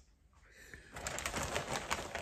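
A moment of near silence, then from about a second in, rustling with many small quick clicks from things being handled close to the microphone.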